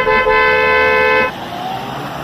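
A loud two-note vehicle horn honking once for about a second and a quarter, then cutting off to leave street traffic noise.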